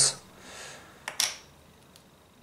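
A small plastic case of spare scalpel blades being handled: a light click about a second in, followed by a brief rustle of the thin steel blades, then quiet.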